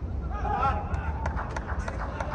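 Cricket players' shouted calls inside an inflated sports dome, over a steady low hum, with a few sharp knocks in the second half.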